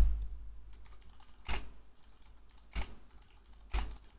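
Typing on a computer keyboard: a run of light key clicks, with a few louder single clicks spaced about a second apart in the second half.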